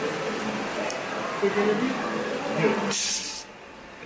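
Indistinct talking and crowd chatter, cut by a short burst of hiss about three seconds in, after which the background is quieter.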